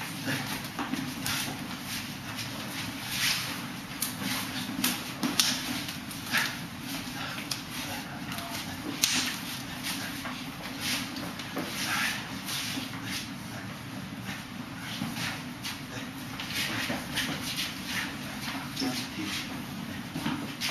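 Irregular sharp slaps and knocks of forearms and hands meeting as two Wing Chun practitioners strike and block at close range, over rustling clothes and heavy breathing.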